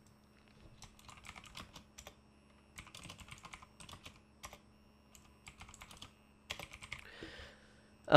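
Computer keyboard typing, faint: quick irregular runs of key clicks with short pauses between words.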